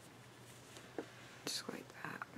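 A brief, quiet whispered sound from a person's voice in the second half, starting with a sharp hiss, after a short click about a second in.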